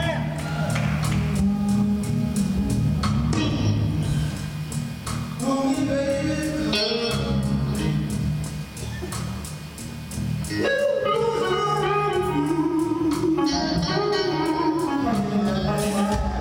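Live electric blues band playing: electric guitars play lead lines with bent notes over bass and drums, with a steady cymbal beat. The music thins briefly just before the middle, then comes back full.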